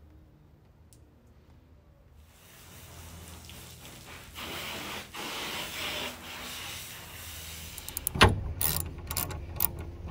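Garden hose spraying water onto a catamaran's hulls, a steady hiss that builds from about two seconds in. From about eight seconds in, a run of sharp metal clicks and knocks as rudder fittings are handled.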